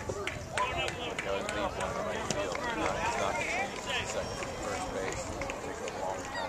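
Indistinct voices of players and spectators calling and chattering across a baseball field, with a few sharp clicks among them.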